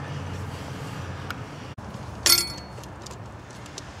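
A single sharp clink of a hard object, with a short ringing tail, about halfway through, over a steady low hum.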